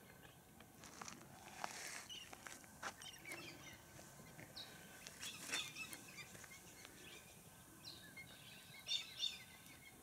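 Faint scattered bird chirps and calls, with two louder calls near the end.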